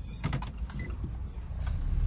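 A string of light clicks and jingling over a steady low rumble.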